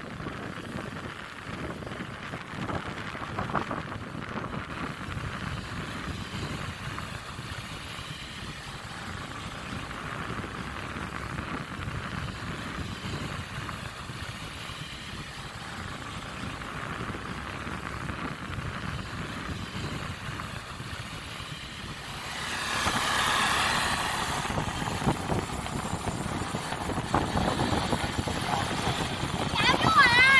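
Motor scooter engine and street traffic heard from a moving motorbike, a steady road noise that grows louder about three quarters of the way through.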